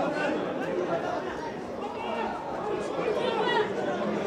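Several voices talking and calling over one another, with no other clear sound.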